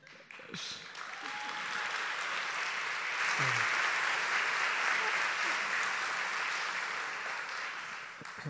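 Audience applauding, building over the first few seconds, then gradually dying away.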